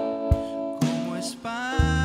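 Indie rock band playing: sustained guitar chords with a few drum hits and cymbal crashes. A deep, steady bass note comes in near the end.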